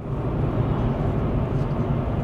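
Steady low road rumble of a car driving, heard from inside the cabin: engine and tyre noise.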